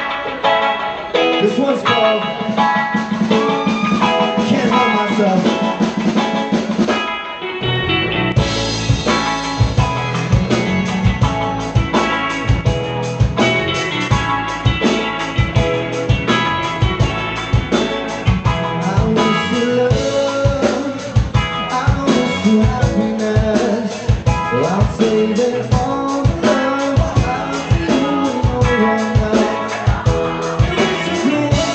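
Live band playing: electric guitars alone at first, then bass and drum kit come in about seven seconds in with a steady beat.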